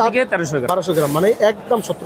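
Speech only: men talking.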